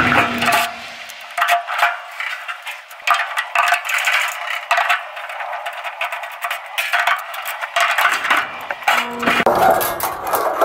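Metal clinks, rattles and scrapes as screws are taken out of a boiler's burner cover with a hand screwdriver and the cover is worked loose. The clicks come irregularly throughout, with a fuller clatter in the last couple of seconds.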